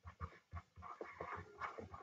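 A stylus writing on a tablet screen, handwriting a word: a faint, quick run of short taps and scratchy strokes.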